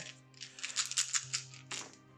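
A handful of black six-sided dice rattled in the hand and rolled onto a tabletop gaming mat: a quick run of small clicks and clatters as they tumble and settle. Steady background music plays underneath.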